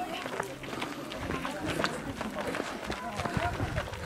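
Footsteps of a group of people walking on a gravel path, many short overlapping steps, with people talking in the background.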